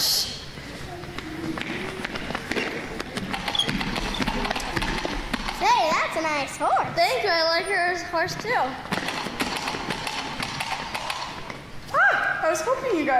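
Light knocks and shuffling footsteps on a wooden stage floor. About halfway through, a child's high voice calls out or sings for about three seconds.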